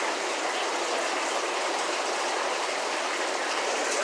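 Aquarium water circulation: a steady, even rush of running and splashing water, with no change in level.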